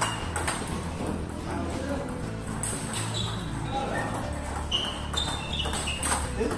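Celluloid-style plastic table tennis ball clicking off rubber paddles and bouncing with short pings on the table during a fast rally, over background music.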